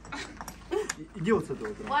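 A few light metallic clicks and clinks as the steel die of a hand coin-minting press is handled and reset on its wooden block, with low voices around.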